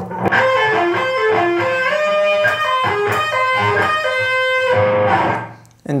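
Ibanez electric guitar playing a quick legato run of pull-offs and slides, the notes flowing into one another as the hand climbs the neck through four positions. The last note fades away near the end.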